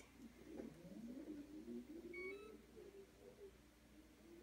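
Near silence: room tone, with a faint short electronic beep about halfway through.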